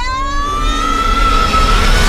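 A woman's long, high scream, held for about two seconds and rising slightly in pitch, over a low rumble.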